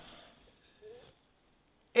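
A pause between sentences of two men's studio speech: near silence in a small room, broken by one faint, brief vocal sound about a second in.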